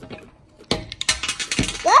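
Small plastic toy pieces clicking and clattering against a glass tabletop in a quick run of light taps lasting about a second.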